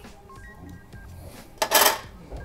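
Scissors cutting through an air-mattress repair patch, one short crisp cut near the end, over faint background music.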